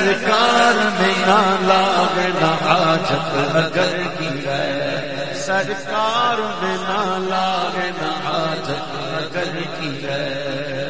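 Unaccompanied devotional naat singing: a male voice sings long, wavering melodic lines over a steady chanted vocal drone.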